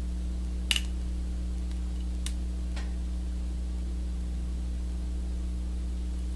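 Steady low electrical hum throughout, with a few small sharp clicks, the loudest about a second in, from a whip finish tool and thread being worked at the head of a fly on the tying vise.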